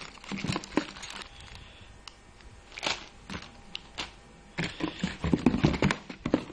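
Plastic parts bags crinkling and items clicking against each other as they are handled in a cardboard box. The sound comes as irregular clicks and rustles, busiest near the end.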